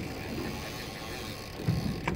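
Steady wind and sea noise on an open boat offshore, with a short low rumble near the end.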